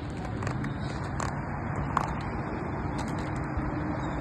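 Quad roller-skate wheels rolling on rough concrete: a steady low rumble with a few light clicks.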